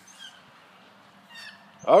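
Quiet outdoor background with a faint high-pitched call about a second and a half in, then a man's voice starting just before the end.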